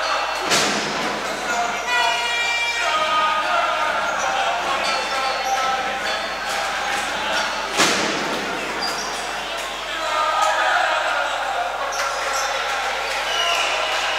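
Crowd and players' voices echoing in a basketball hall during a stoppage before free throws, with two sharp thuds of a basketball bouncing on the court: one just after the start and one about eight seconds in.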